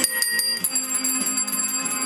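A set of metal handbells rung in turn to play a melody, several clear ringing notes in quick succession whose tones hang on and overlap.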